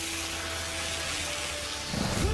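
Steady rushing hiss of a sound effect for the Flash's lightning energy, over a held low drone that shifts pitch about a second in.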